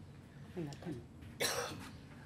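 A person coughs once, briefly, about a second and a half in, after a faint murmured voice.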